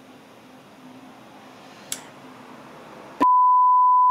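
Quiet room tone with a faint click about two seconds in, then a loud, steady single-pitch censor bleep that starts about three seconds in and lasts about a second.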